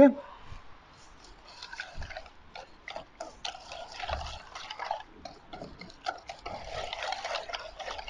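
Wire whisk beating a liquid marinade in a stainless steel bowl: quick, repeated scraping clicks of the wires against the metal, with light sloshing of the liquid.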